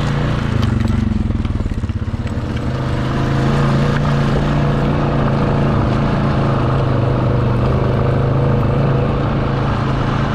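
ATV engine running under throttle on the trail, easing off for a moment about two seconds in, then pulling steadily again.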